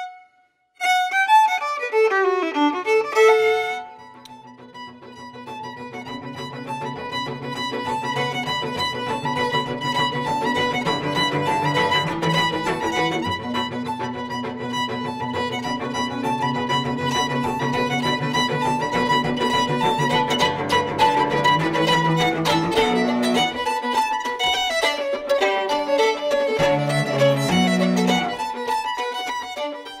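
A solo fiddle plays a short bowed phrase in the first few seconds, with a brief gap just after the start. From about four seconds in, a fuller passage of fiddle music with sustained lower notes underneath carries on, then fades out near the end.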